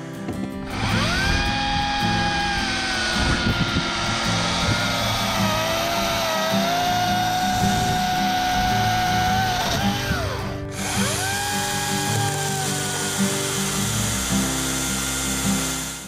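Oregon CS300 battery-powered chainsaw spinning up and cutting through a log, its electric whine sagging in pitch under load mid-cut and stopping suddenly about ten seconds in. It then spins up again briefly and winds down.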